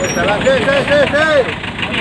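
A goat bleating: a wavering call of about five quick rising-and-falling pulses, heard over market crowd noise.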